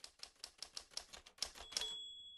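Typewriter sound effect: about a dozen quick key strikes, one for each letter of the words being typed, with a bell ringing in near the end.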